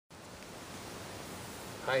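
Steady, even background hiss of open-air ambience, with a man's voice saying "Hi" at the very end.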